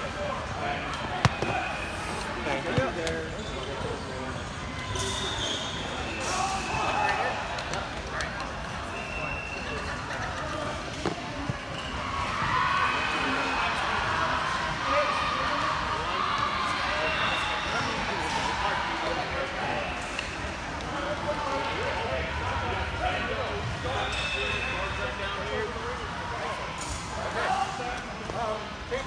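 Many voices chattering at once in a large gymnasium hall, with scattered sharp knocks and a few short, high squeaks.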